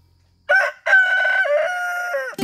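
Rooster crowing: a short first note about half a second in, then, after a brief break, a long held call.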